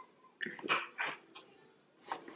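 A dog barking, about four short barks in quick succession.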